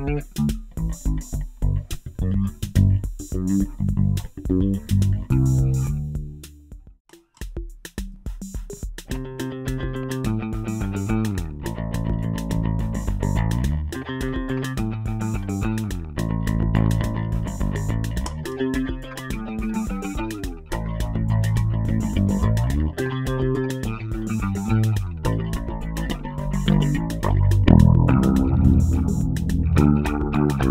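Electric bass with Nordstrand Big Single pickups played through an Electro-Harmonix Stereo Electric Mistress flanger/chorus pedal, its tone moving with a sweeping flanger. A fingerstyle line breaks off about a fifth of the way in, and after a short pause picked notes begin.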